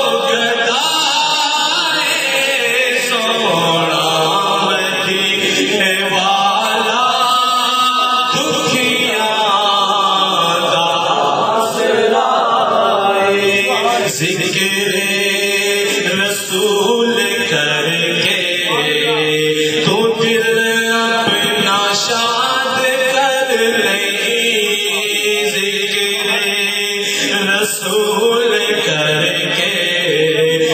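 A naat, a devotional poem, chanted unaccompanied by voices, sung without a break in long held notes.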